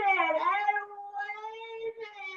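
A woman's voice drawing out a single word in one long, held, wailing tone, steady in pitch with a slight dip, growing softer about halfway through.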